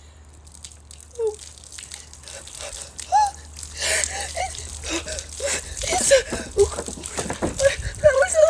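Iced tea poured from a gallon jug over a person's head, splashing onto her and the concrete and growing louder as the pour goes on, with short high-pitched whimpers and gasps from her at the cold.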